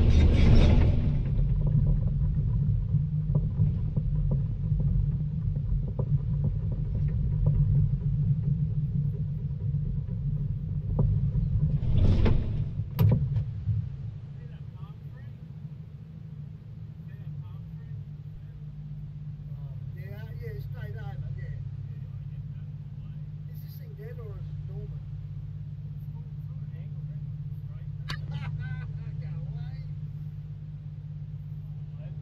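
Volvo EC220 DL excavator's diesel engine running under load, with surges of noise near the start and about 12 s in and a sharp click just after. About 14 s in it drops back to a steady idle, with faint voices in the background.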